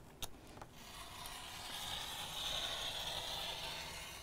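Rotary cutter rolling along the edge of an acrylic ruler, slicing through fabric onto a cutting mat to trim it square: a steady scraping hiss that starts just under a second in, swells in the middle and eases off near the end, after a single short click.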